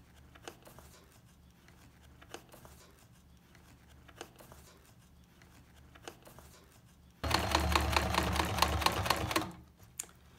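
Electric sewing machine running in one burst of about two and a half seconds, starting about seven seconds in, with a fast, even stitching rhythm as it sews through the apron fabric. Before that there are only faint clicks from the fabric being handled.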